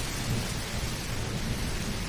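Steady rushing noise filling the whole range, with a low rumble underneath.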